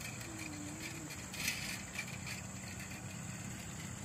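Steady outdoor background: an even high insect drone over a low steady hum, with a brief rustle about a second and a half in and a small click at about two seconds.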